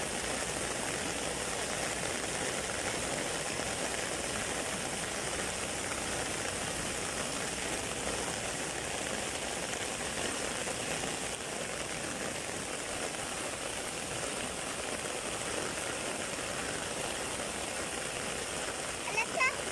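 Heavy rain falling steadily on dense foliage, a constant even hiss.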